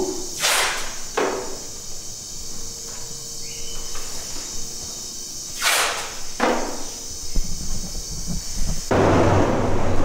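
Short blasts of compressed air hissing, in two pairs about five seconds apart, each a longer blast followed by a shorter one. About a second before the end, the sound gives way to louder steady background noise with a low hum.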